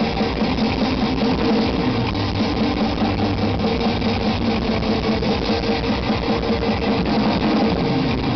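A black metal band playing live: distorted electric guitars, bass and drums in a dense, unbroken wall of sound, heard from the audience.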